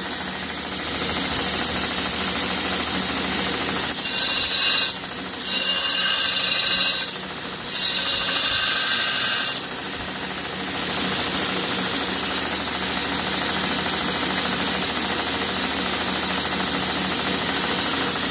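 Angle grinder running steadily on steel, with the grinding sound changing in bouts between about 4 and 10 seconds in.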